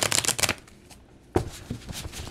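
Thoth tarot deck being shuffled by hand: a quick run of card clicks in the first half-second, a short pause, then a single sharp tap and lighter card handling.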